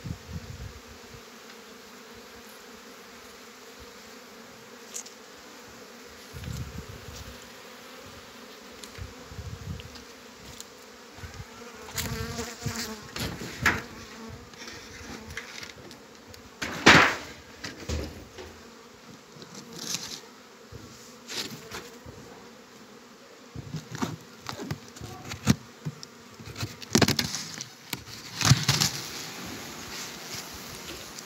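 Honeybees buzzing steadily at open hives. From about halfway through comes a series of knocks and clatters as the wooden hive boxes and covers are handled, the loudest a sharp knock a little past the middle.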